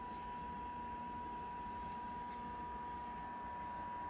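Quiet room tone: a steady, thin high-pitched tone over a low hum, with no distinct events.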